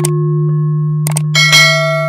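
Subscribe-button animation sound effects over a steady low drone: a double mouse click at the start and another about a second in, then a bright notification-bell chime that rings on through the end.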